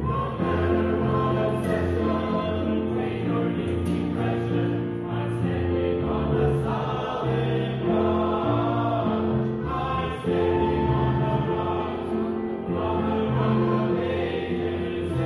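Mixed choir of men and women singing a hymn together, moving from one held note to the next about once a second.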